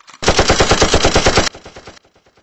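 Burst of automatic gunfire: about a dozen sharp shots a second for just over a second, cutting off sharply and trailing off in fainter echoing repeats.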